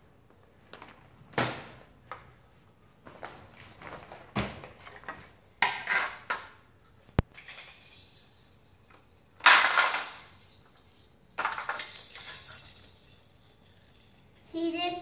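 Small hard plastic toy pieces clattering and clinking as they are handled, taken out of a plastic pouch and set onto a plastic pegboard base, in irregular bursts with a few louder rattles.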